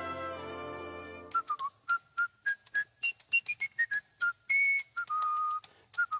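The orchestral score fades out in the first second or so. After it comes a whistled tune of short, clipped notes that step up and down, with a couple of longer held notes near the end.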